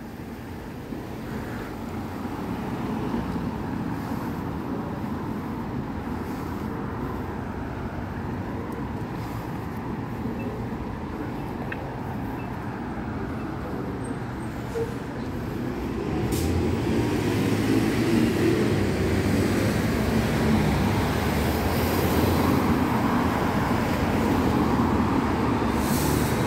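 City street traffic: cars and a bus passing in a steady wash of engine and tyre noise, growing louder about sixteen seconds in.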